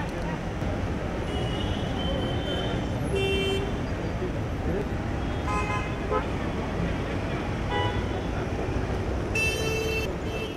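Steady traffic rumble and crowd noise outside a building entrance, with a few short vehicle-horn toots, the last near the end.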